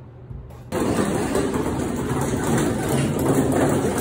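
Plastic casters of a folding platform hand truck rolling across a hard floor: a steady rumble that starts suddenly about a second in.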